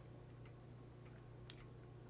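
Near silence: room tone with a steady low hum and two faint ticks about a second apart.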